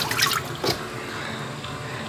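Water trickling and dripping into a plastic utility tub partly filled with water, the hose-fed reservoir for a steam box.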